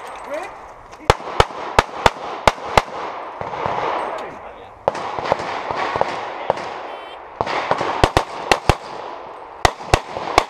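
Handgun shots fired in rapid strings: about six quick shots in the first three seconds, a few more spaced shots in the middle, then another fast string near the end, as the shooter moves between firing positions on a practical pistol stage.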